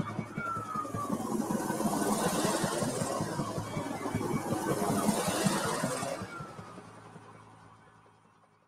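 Opening of a short film's soundtrack: fast pulsing music under a swelling rush of noise, with a short falling whine near the start and again about six seconds in. The whole thing fades out over the last two seconds.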